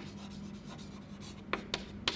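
Chalk writing on a blackboard: faint scratching as a word is written, with a few sharp taps of the chalk, one at the start and two close together near the end.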